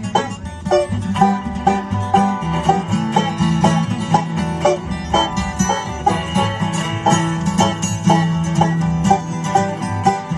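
Live acoustic bluegrass band playing: rapid banjo picking over strummed acoustic guitars and a plucked upright bass, with a steady, even rhythm.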